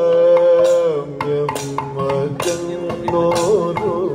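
Kathakali music: a male singer holds a long sung note, then moves through shorter notes, over sharp strokes of a maddalam barrel drum and metal cymbals.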